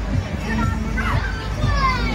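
Children's voices calling out as they play, with music in the background and a steady low hum underneath.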